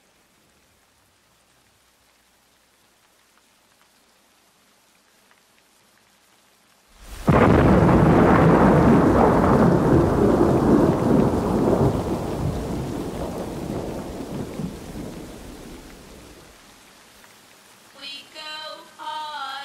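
Recorded thunderstorm on a soundtrack: a faint hiss of rain, then about halfway through a sudden loud thunderclap that rolls on and slowly fades away.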